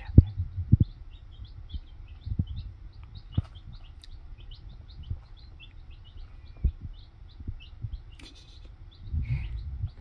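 Baby chicks peeping steadily, several short high peeps a second. A few soft low thuds are scattered through, the loudest near the start.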